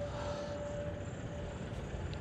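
Steady, faint drone of a distant engine, with a thin held whine in it that fades out a little past the middle.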